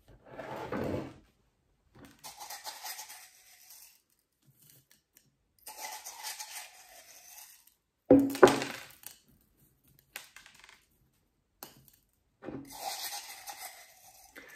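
Small washed pebbles clattering in a ceramic mug and being dropped onto a potted succulent arrangement's soil as top dressing. The rattling comes in several short bursts, with a few sharper, louder knocks about eight seconds in.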